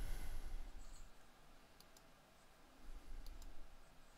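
A few faint, sharp clicks, near two seconds in and twice just after three seconds, over low bumps of movement at a desk microphone.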